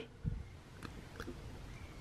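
A few faint clicks and a soft knock of hard plastic as a small accessory is pushed against an action figure's arm, failing to go into place.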